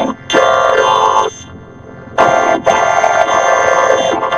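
Cartoon soundtrack run through a heavy 4ormulator pitch-shifting effect, so the voices and music come out as a dense, buzzy synthetic chord. It drops much quieter for about a second midway, then comes back loud.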